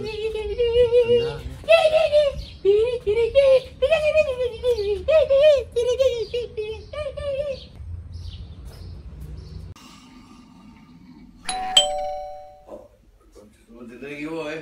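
A man's voice, its pitch wavering widely, fills the first half. About twelve seconds in, a short electronic doorbell-like chime sounds once, starting sharply and fading within about a second.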